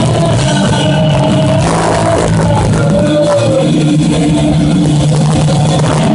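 Live punk rock band playing loud: distorted electric guitar, bass and drums at the close of a song, with a held chord ringing in the last couple of seconds.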